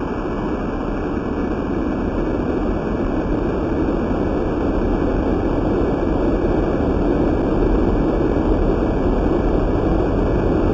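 The 2011 magnitude 9.0 Tōhoku (Sendai) earthquake's P-wave, recorded underwater by a hydrophone and sped up 16 times: a dense, noisy rumble that grows slowly louder.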